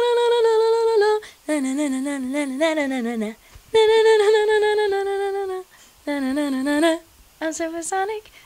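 A woman singing a wordless melody in several held phrases with a slight vibrato: a high sustained note, a lower wavering phrase, the high note again, then two short notes, with brief pauses between. It is the tune, which she calls very annoying, that a band's song was built on.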